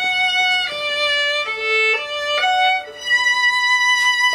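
Solo violin playing a slow melody of held, bowed notes: it steps down over the first two seconds and back up, then after a brief break near the end holds one long higher note.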